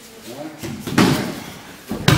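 Bodies hitting the dojo mat during aikido throws and pins: a sharp thud with a slap about a second in, and another at the very end, each ringing briefly in the hall.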